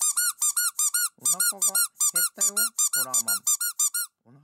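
Rapid high-pitched squeaks from a small squeeze-toy figure of Horror Man being squeezed over and over, about seven squeaks a second, each one rising and falling in pitch.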